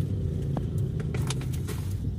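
Steady low rumble of road traffic as a large intercity bus's diesel engine comes up and passes close by, with a few light clicks.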